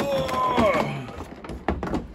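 A cardboard box sleeve being pulled up and off a large plastic blister pack: a squeaky, pitched scraping for about the first second, then a single knock near the end.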